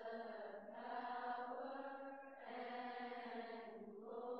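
Coptic liturgical hymn chanted by voices in long, slowly held notes, with a new phrase starting about halfway through.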